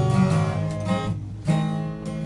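Acoustic guitar strummed with a pick. One chord rings and fades, and a fresh strum comes about one and a half seconds in.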